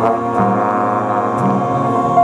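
Jazz band of brass players with trombones playing held chords, with low notes moving underneath.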